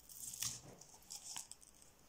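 Faint rustling and crackling of sheer voile ribbon being unwound from its spool by hand, loudest about half a second in and again just after a second in.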